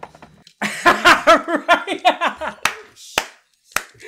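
A man laughing hard in a run of quick bursts, then three sharp hand claps about half a second apart.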